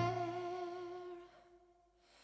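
The last held note of a song ringing on alone: a single wavering tone fading away over about a second, then silence.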